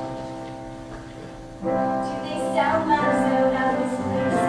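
Live piano accompaniment: a held chord dies away, a new chord comes in about a second and a half in, and a woman starts singing over it shortly after.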